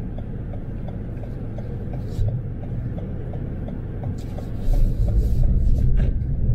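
Car cabin with a steady low engine and road rumble, and a turn indicator ticking about three times a second for the first four seconds, just after a left turn. The rumble grows louder about five seconds in.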